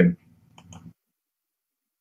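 The end of a spoken word, then a few faint small clicks under a low room hum, after which the sound cuts off abruptly to dead silence.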